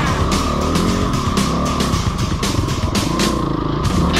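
Rock music with guitar plays over a Yamaha WR250F dirt bike's single-cylinder four-stroke engine, which revs up and down repeatedly as the bike climbs over rocks.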